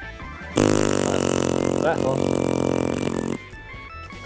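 Game-show buzzer sound effect: a loud, steady buzz of about three seconds that starts and stops abruptly. A short 'ah' from a voice sounds over it, and guitar background music plays underneath.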